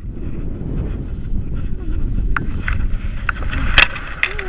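Wind rumbling on the microphone of a tandem paraglider flying low over a grassy slope, with a few sharp clicks from about halfway. Near the end comes a loud scraping knock as the harness touches down on the grass.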